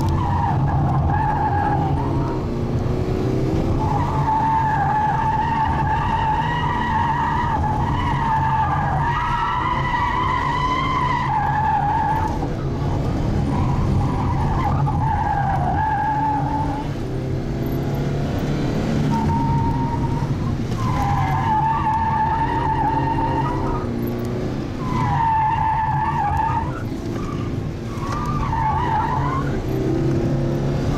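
Car engine running steadily under repeated tyre squeals, heard from inside the cabin. The squeals come again and again, each lasting one to three seconds, as the tyres lose grip in hard turns.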